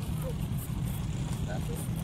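Steady low outdoor rumble with faint background voices, and a light rustle of paper being handled.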